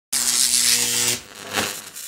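Logo-intro sound effect: a loud electric buzz with a steady hum that cuts off suddenly after about a second, followed by a softer whoosh.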